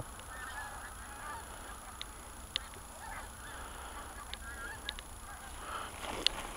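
Faint honking of distant wild geese, a few scattered calls, with a few small clicks close by.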